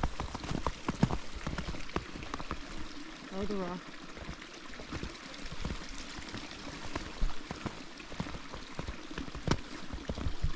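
Footsteps crunching through fresh powder snow, an irregular run of short crackling crunches. A short voiced hum cuts in about a third of the way through.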